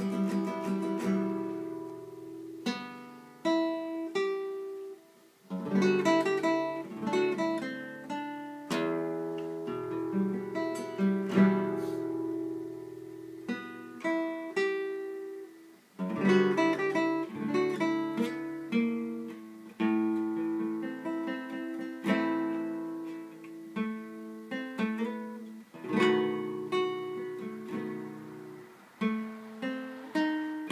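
Solo cutaway acoustic guitar played by hand, a piece of plucked single notes and strummed chords that ring and fade, with short breaks in the playing about five and sixteen seconds in.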